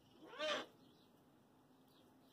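A single short squeaking call from a striped skunk about half a second in. Its pitch arches up and falls away.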